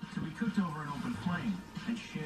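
Faint, indistinct background voices talking, with a faint steady tone and some music underneath.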